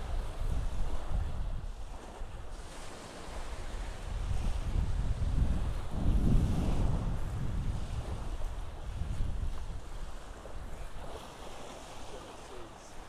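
Wind buffeting the microphone, with small waves washing onto the beach.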